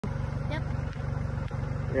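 An engine idling steadily nearby, a low, even pulsing hum.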